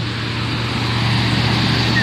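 A pickup truck approaching on the road, its engine and tyre noise building steadily as it nears, over a low steady hum.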